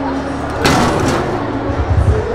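A single hard punch landing on a boxing arcade machine about half a second in: one sharp slam that rings briefly, over crowd chatter.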